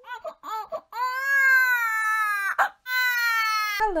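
A baby's voice: a few short babbling sounds, then two drawn-out cries, the first about a second and a half long and slightly falling, the second shorter, with a brief click between them.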